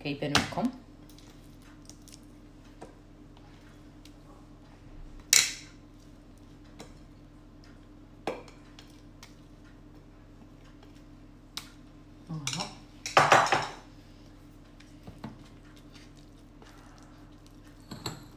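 Kitchen utensil scraping and tapping against a bowl as a thick cheese mixture is scooped out and spread into a steel cake ring: scattered light clicks and knocks, with louder scrapes about five seconds in and again around thirteen seconds in. A faint steady hum runs underneath.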